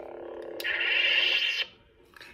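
Electronic sound effects from a Savi's Workshop lightsaber, played through its built-in speaker: a steady hum, then about half a second in a louder, higher buzz that starts with a click and lasts about a second before it cuts off.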